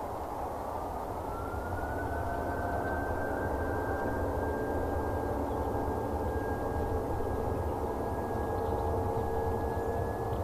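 Airbus A320 jet engines spooling up, a whine rising in pitch over the first two seconds and then holding steady over a rumble, as thrust is set for the take-off roll.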